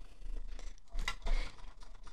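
Die-cutting machine rolling a stack of cutting plates, a steel die and cardstock through its rollers, the die cutting the card: an irregular run of small clicks and crackles, with a sharper click about a second in.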